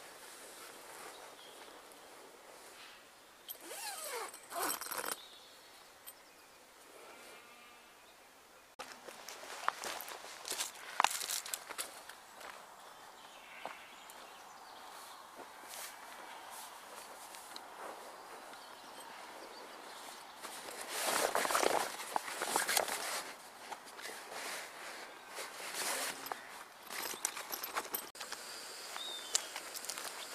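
Heavy canvas swag tent being handled as a person climbs in through its zipped top opening: canvas rustling, zips being worked and footsteps on grass, in several separate bouts, the loudest a little past the middle.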